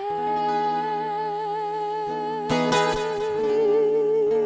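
A woman singing live into a microphone, holding one long note with vibrato, over acoustic guitar accompaniment. A guitar strum comes in about two-thirds of the way through.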